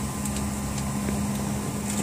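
Steady cabin noise of a jet airliner taxiing: the engines running at low thrust and cabin air make an even hiss over a low steady hum.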